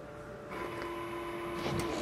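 Krups Espresseria superautomatic espresso machine running with a steady hum as it finishes dispensing an espresso shot. The hum starts about half a second in and stops just before the end.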